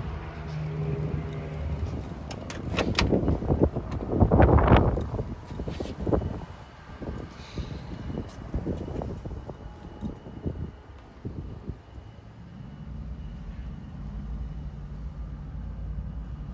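Wind gusting on the microphone, loudest about four to five seconds in, with scattered clicks and knocks of handling. Under it runs a low, steady hum, which fades in the middle and returns near the end.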